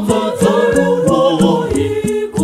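A choir singing a Shona Catholic hymn in several voice parts, over a steady percussion beat of about three strikes a second.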